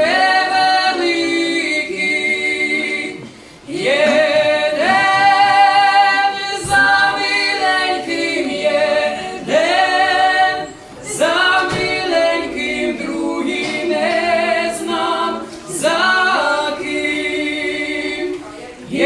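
Lemko folk trio of one male and two female voices singing a cappella in harmony, in long held phrases with short breaks between them.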